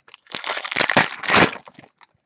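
Crinkling and crackling of a trading-card pack's foil wrapper being handled and crumpled, lasting about a second and a half.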